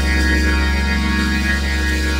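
Church keyboard playing slow, held organ-style chords, over a steady low hum.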